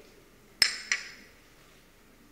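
A china cup clinking against its saucer: one sharp, ringing clink about half a second in, then a softer one just after.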